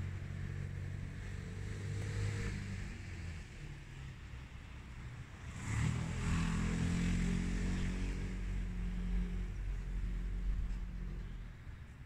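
Engine of a passing motor vehicle: a low steady hum that fades out, then a second, louder engine sound that swells about six seconds in and dies away near the end.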